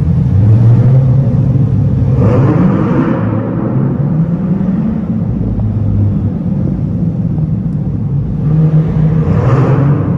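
C8 Corvette V8 engine running as the car drives through a concrete parking garage, the revs climbing about two seconds in and again near the end.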